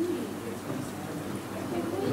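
Indistinct murmur of several people talking in the background, over a low steady hum.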